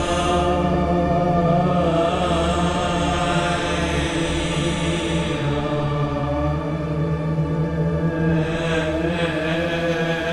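Steinberg X-Stream spectral synthesizer playing its "Church of Sins" preset from a keyboard: a sustained drone of many held tones layered together, growing brighter near the end.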